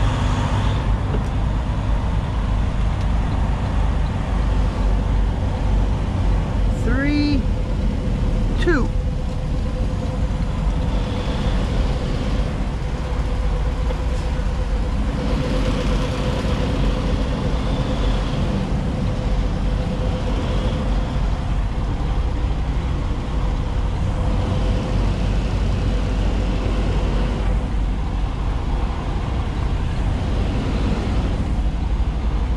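Semi truck's diesel engine running at low speed, heard from inside the cab as a steady low rumble while the rig is maneuvered. Two brief rising squeaks stand out about seven and nine seconds in.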